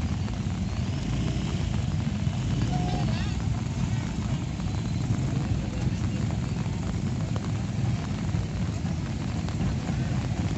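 Motorcycle engines of a slow procession of motorbikes and motorcycle-drawn pedicabs running at low speed as they pass, a steady low rumble.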